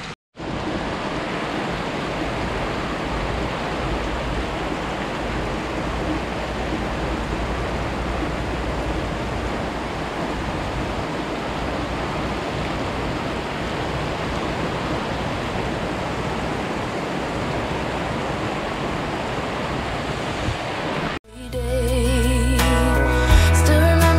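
Heavy rain pouring down in a steady, even hiss. It cuts off a second before the end.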